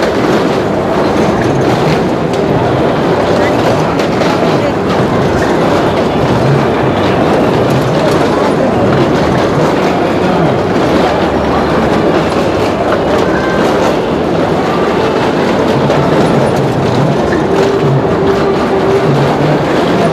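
Two small cars driving round the vertical wooden wall of a well of death: a loud, continuous rumble of their engines and of tyres rolling over the wooden planks.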